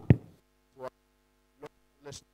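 Steady mains hum through a public-address sound system, with two loud thumps on the microphone right at the start and a couple of faint short sounds later.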